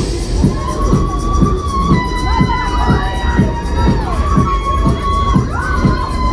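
Riders screaming and cheering on a swinging fairground thrill ride, over loud ride music with a steady beat of about two a second.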